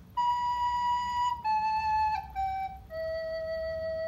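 Soprano recorder playing four descending notes, B, A, G, then low E, one note at a time, with the last note held longest.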